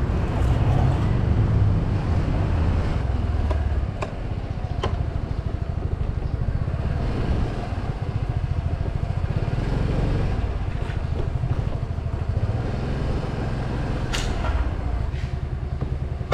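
Yamaha Grand Filano Hybrid scooter's 125 cc single-cylinder engine running at low riding speed, a steady low rumble with rapid pulsing. A few sharp clicks or knocks come through about four, five and fourteen seconds in.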